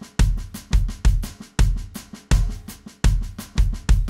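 Electronic drum kit: an even, unaccented single-stroke roll on the snare, evenly spaced strokes played against a syncopated bass drum pattern. This is the foot part with the plain snare roll laid over it, a stage in building up the train beat before the backbeat accents are added.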